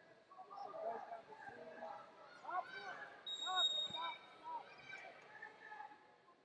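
Voices shouting in a large echoing hall during a wrestling bout, with a short, steady referee's whistle blast a little over three seconds in.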